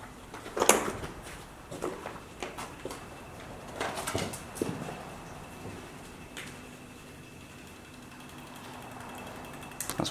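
Water dripping through a hole in a ceiling, heard as a faint steady buzz that sounds electrical. A few knocks and scuffs from debris underfoot come in the first half.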